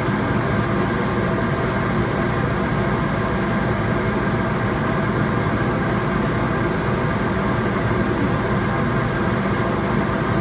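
Steady mechanical drone of a CO2 laser cutter at work: its exhaust blower, water chiller and air-assist compressor running together, unchanging, as the laser head cuts through a thick wooden board.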